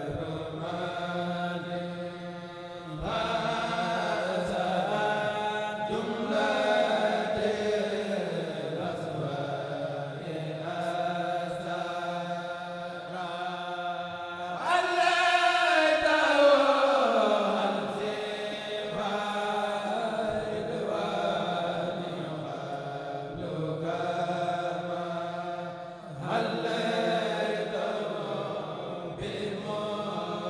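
A Mouride kourel, a group of male voices, chanting a xassida together through microphones and a sound system, in phrases of held notes. About halfway through comes the loudest phrase, a long note that slides down in pitch.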